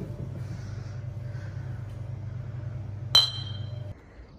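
A single sharp clink of a glass beer mug about three seconds in, ringing briefly at two high pitches, over a steady low hum.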